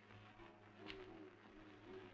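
A dove cooing faintly over a low steady hum.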